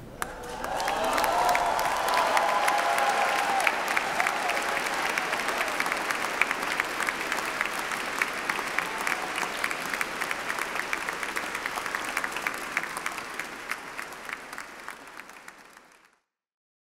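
Large crowd applauding: dense, steady clapping that slowly fades away.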